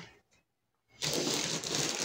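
Silence for about a second, then a steady crinkling rustle of a plastic shipping bag being handled.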